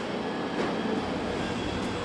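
Steady mechanical noise of a car assembly hall: conveyor and line machinery running, with a couple of faint clicks.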